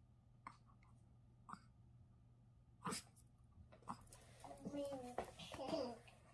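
A small dog's single short sneeze about three seconds in, in a quiet room, followed by voices near the end.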